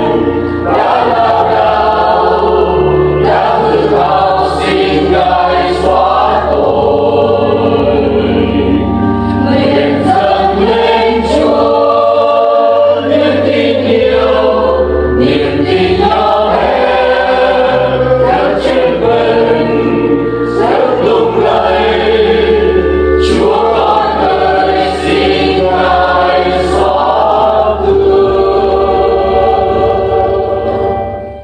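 A church choir singing a Vietnamese Catholic hymn, with instrumental accompaniment carrying a steady bass line underneath.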